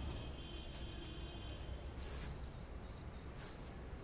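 Quiet outdoor background: a steady low rumble with a few faint short ticks, and a faint high tone that stops about a second and a half in.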